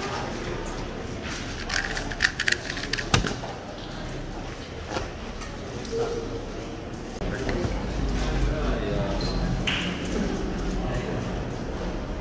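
2x2 speed cube turned very fast for about two seconds, a rapid run of plastic clicks, ending in a sharp slap as both hands come down on the Speed Stacks timer to stop it.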